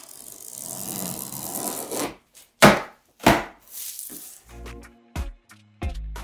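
Box cutter drawn along the packing tape on a cardboard box, a steady scratchy rasp for about two seconds, then two loud sharp rips as the cardboard flaps are pulled open, followed by lighter rustling and clicks.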